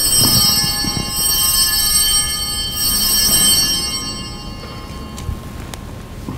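Altar bells rung at the elevation of the chalice after the consecration: a bright, high ringing struck again about three seconds in, dying away over the last couple of seconds.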